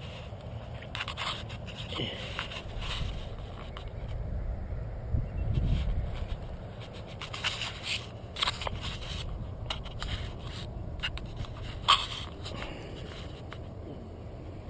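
Handling noise of a camera being moved and set down on grass: rubbing and scraping with scattered sharp clicks, over a low wind rumble on the microphone. No drone motors are running.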